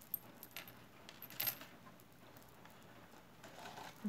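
Glass beads of a multi-strand necklace clicking lightly against each other as it is handled: a few separate clicks, then a short cluster about a second and a half in.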